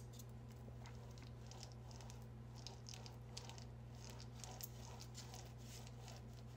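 Faint sticky crackle of a foam paint roller loaded with wet paint being rolled firmly over a styrofoam printing plate, in short irregular strokes, over a steady low hum.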